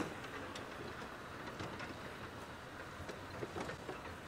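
Open safari vehicle driving slowly along a dirt track: a steady low engine and road rumble with scattered light clicks and rattles.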